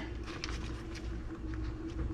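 Faint, soft rustles and light taps of hands rolling and tucking a filled flour tortilla on a cutting board, over a low steady hum.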